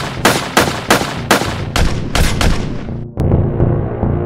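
Gunfire sound effects in a logo intro: a string of about seven sharp shots, two or three a second, over soundtrack music. The shots stop about three seconds in and the music carries on.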